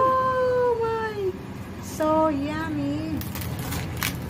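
Two long drawn-out vocal tones: the first high, held and falling slightly at its end, the second lower and wavering. Near the end, a knife crunches through the crisp crackling skin of a rolled roast pork belly.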